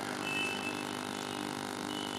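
A pause in speech: a steady background hum and hiss, with a faint high tone near the start.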